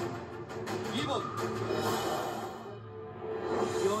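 Background music from a TV broadcast, held low chords, with a voice briefly over it, heard through a television's speaker.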